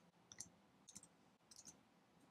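Faint computer keyboard keystrokes as numbers are typed into a form: three short clusters of quick clicks, about half a second apart.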